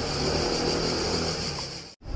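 Outdoor street ambience with car traffic and a steady high-pitched hiss, cutting off suddenly at the end.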